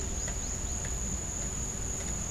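Insects trilling steadily at a high pitch in woodland, over a low background rumble.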